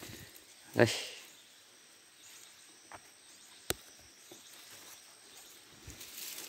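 Quiet outdoor background with one sharp click a little past the middle.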